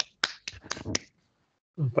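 Hand claps picked up by a single participant's microphone on a video call: about five quick, sharp claps in the first second, then a short silence before a man's voice begins near the end.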